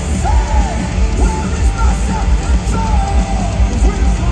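Loud live rock band playing, with strong bass and drums, and a lead vocal sung in long, arching phrases over it.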